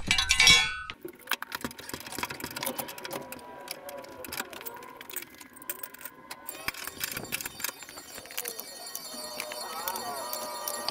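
A loud ringing metal clang in the first second, then scattered light clinks and clanks of steel wheel chocks, axle stands and hand tools being handled.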